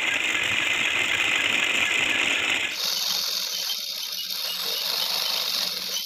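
Sewing machine stitching a seam along a strip of black fabric, running fast and steadily. About halfway through its sound turns thinner and hissier.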